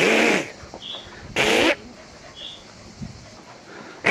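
A young goat bleating twice: two loud, harsh calls about a second and a half apart.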